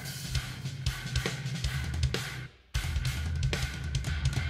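Instrumental progressive-metal track with a full drum kit playing busy kick drum, snare and cymbal patterns over electric guitar, in shifting odd rhythms. The music cuts out suddenly about two and a half seconds in for a split second, then comes straight back.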